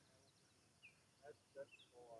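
Near silence outdoors, with a few faint, short bird chirps in the second half.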